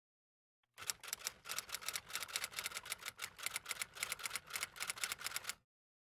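Sound effect of rapid mechanical clicking, roughly eight clicks a second, starting about a second in and cutting off abruptly shortly before the end.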